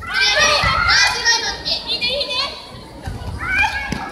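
Children's high-pitched voices shouting and calling out in quick overlapping bursts, with a short thump just before the end.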